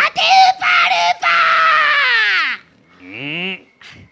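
A woman shrieking a comedy one-shot gag into a microphone, high-pitched and unintelligible: two short shouts, then one long held cry that drops in pitch at its end, and a shorter, lower call about three seconds in.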